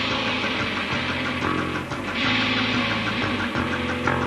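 Live rock band playing an instrumental passage: electric guitars through amplifiers strumming steady, sustained, distorted chords, with a brighter, louder strummed wash from about two seconds in.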